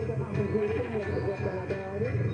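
AM talk-radio broadcast playing a voice over a music bed, with no clear words.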